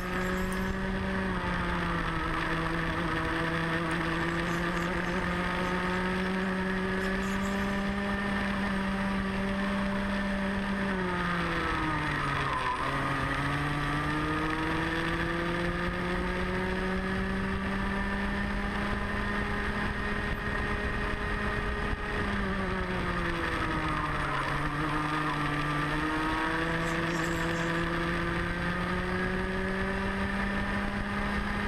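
Rotax Mini Max kart's 125 cc single-cylinder two-stroke engine at high revs, heard from onboard on a racing lap. The pitch falls twice, around 11 and 23 seconds in, as the kart slows for corners, then climbs back up as it accelerates out.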